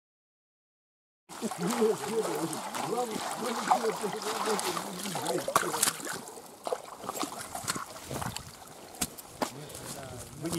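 Indistinct voices for a few seconds, then wet gravel and water in a wire-mesh sieve being washed: stones rattling and clicking against the screen with splashing water.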